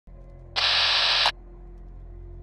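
Logo-intro sound effect: a low steady drone, with a loud burst of noise about half a second in that stops abruptly after under a second.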